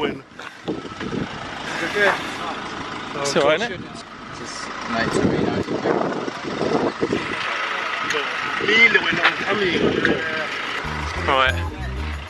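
Several people talking over the steady running of a stopped lorry's engine close by.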